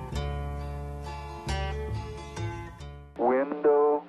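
Acoustic guitar picking sustained notes over a low bass note, fading slowly. About three seconds in it cuts off abruptly to a louder, thin, radio-like singing voice.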